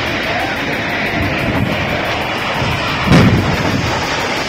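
Bridge spans collapsing into the Ganga river: a heavy, steady rush of crashing noise, with a louder deep crash about three seconds in. A news music bed runs underneath.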